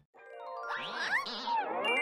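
Tinkling electronic chime sound with many sliding, wavering pitches, fading in from silence and growing louder.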